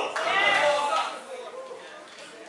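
A person's voice calling out in a wavering, sung-like tone that trails off after about a second, leaving the quieter murmur of the hall.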